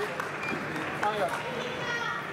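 Voices calling out in a large hall, with a few short knocks of footsteps on the fencing piste.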